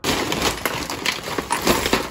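A woven plastic shopping bag rustling as it is tipped out, and a heap of small plastic, metal and glass items (cables, a router, fishing reels, glass jars) clattering onto the floor in a run of knocks and rattles, loudest about a second and a half in.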